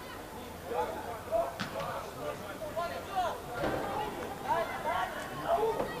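Footballers' voices calling and shouting to each other on the pitch, heard from a distance in short, scattered calls.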